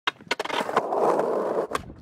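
Skateboard sounds: a few sharp clacks of the board, then wheels rolling on a hard surface for about a second, and a last clack near the end. The sound cuts off suddenly.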